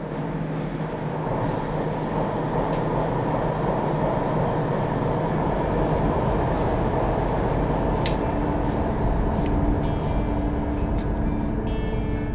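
Steady drone of a fishing vessel's engine heard inside the wheelhouse, a low hum under an even rush of noise. There is a sharp click about two-thirds of the way through and a few fainter clicks after it.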